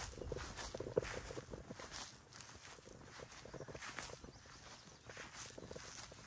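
Footsteps of a person walking through short grass, soft steps about twice a second.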